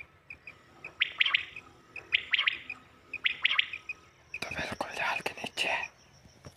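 Quail calling in short clipped phrases, three times about a second apart, over faint regular chirping. Near the end comes a louder burst of rustling and scuffling.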